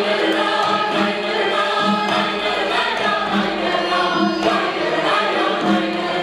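Armenian folk song sung by men's voices through microphones, with a chorus of the ensemble joining in, over a steady beat.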